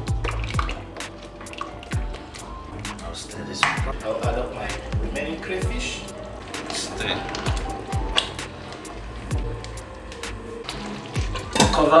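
Background music over a spatula stirring thick soup in a stainless steel pot, with frequent short, sharp clicks and knocks of the spatula against the pot.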